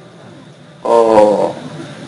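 A man's voice calling out a single drawn-out "O" about a second in, held steady for over half a second and then fading, as the opening of an address like "O father".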